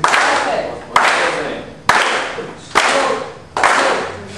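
A group clapping hands together in time, flamenco palmas, about one clap a second, five claps in all, each ringing out in the room. Voices sound faintly under the claps.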